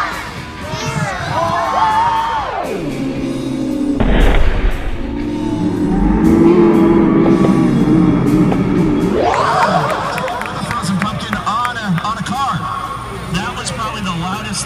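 A giant pumpkin dropped from a crane lands on a minivan, crushing its roof with one loud bang about four seconds in, followed by a crowd cheering for several seconds. Music plays throughout.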